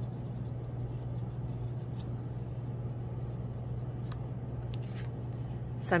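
Steady low hum and faint room noise, with a few light ticks scattered through.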